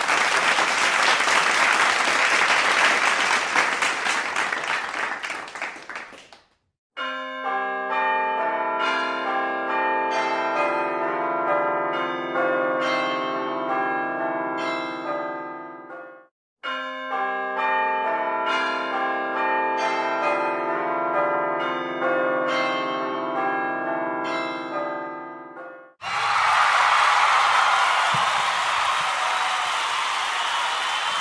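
A peal of bells struck in quick succession, ringing through a run of changing pitches for about nine seconds, then breaking off briefly and playing the same peal again. A steady noisy hiss fades out in the first six seconds before the bells and returns near the end.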